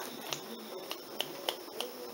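About five light, sharp clicks at irregular spacing, a few tenths of a second apart.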